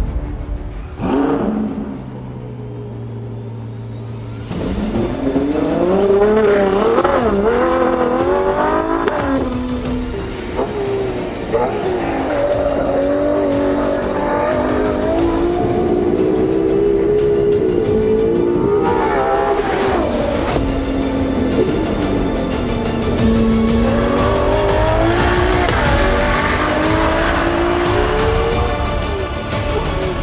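Ferrari 812 Competizione's naturally aspirated 6.5-litre V12 revving hard under acceleration. From about four and a half seconds in, the engine note climbs and drops again and again as it runs up through the gears, over a music soundtrack.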